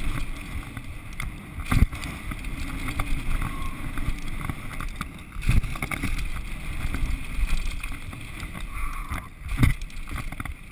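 Mountain bike descending a loose dirt and gravel trail: wind buffeting the camera microphone over the rumble and rattle of the tyres and suspension. There are three heavy thumps over bumps, about two seconds in, about five and a half seconds in, and near the end.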